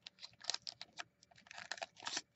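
Faint, irregular light clicks and crinkles of a foil-wrapped Magic: The Gathering booster pack and loose cards being handled.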